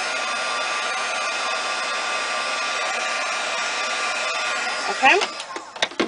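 Handheld craft embossing heat tool running with a steady whir and whine, blowing hot air to melt white embossing powder on card stock. It is switched off just before the end.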